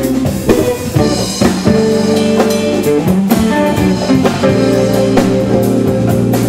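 Jazz fusion band playing live: electric guitar over a full rhythm section of bass, keyboards, drum kit and congas, with steady drum hits.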